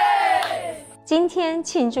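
A group of children singing together and ending on a long, loud held shout that falls in pitch and fades out about a second in; a woman then starts speaking.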